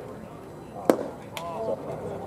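A pitched baseball lands with one sharp crack about a second in, followed by a lighter click and a brief raised voice, over background crowd chatter.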